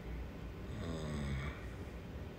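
A man's brief, low, closed-mouth hum, falling slightly in pitch, about a second in, over a steady low background hum.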